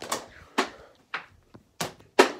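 A few short, sharp knocks, about four in two seconds, spaced irregularly around half a second apart.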